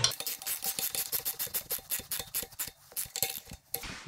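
A wrench on a fitting of the air compressor's regulator manifold while it is being tightened: a quick, regular run of light metallic clicks, several a second, with a couple of short pauses near the end.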